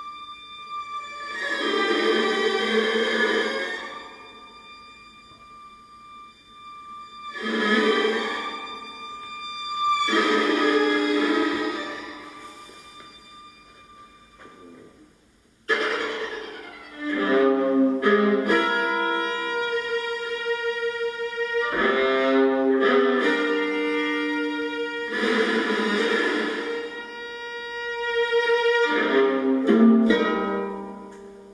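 Solo viola played with the bow. In the first half, quiet held tones are broken by three swells of noisy bowing. About halfway through, a sudden loud attack starts a run of sustained bowed notes that step from pitch to pitch.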